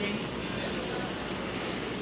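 Steady, even background noise of a large store, with no distinct sounds standing out.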